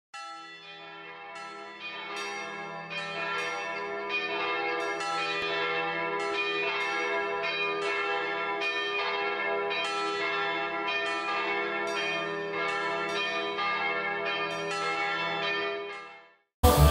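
Church bells pealing, a quick run of overlapping strikes, about two to three a second, each ringing on into the next. The ringing fades in over the first few seconds, then holds steady and stops abruptly at the end.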